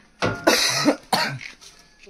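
A person coughing loudly close to the microphone: a few harsh bursts within the first second and a half, the middle one the longest and loudest.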